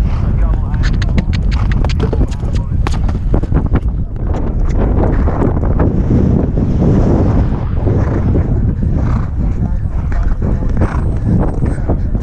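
Thoroughbred horse galloping on grass: rapid hoofbeats over a steady low rumble of wind and motion on the helmet-mounted microphone.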